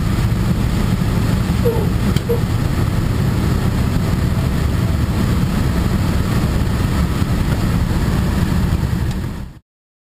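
The B-25 Mitchell's twin Wright R-2600 radial engines running steadily, heard from inside the cockpit as a dense, low drone. The sound cuts off abruptly shortly before the end.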